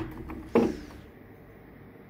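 A single short knock with a brief scrape, about half a second in, as a vertical sand-casting flask is set down on the bench. Quiet room tone follows.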